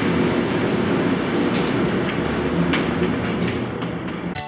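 A steady low rumble with hiss, with a few faint clicks.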